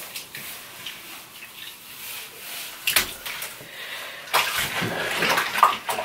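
Water in a soapy bathtub being worked by hand as a wet synthetic wig is handled: quiet swishing at first, a sharp splash about three seconds in, then water streaming and splashing off the hair as it is lifted out, louder for the last second and a half.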